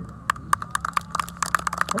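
Scattered hand clapping from a small group, sharp irregular claps starting a moment in.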